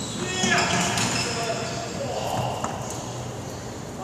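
Court shoes squeaking on a wooden sports-hall floor, with footfalls and a couple of sharp knocks, echoing in a large hall.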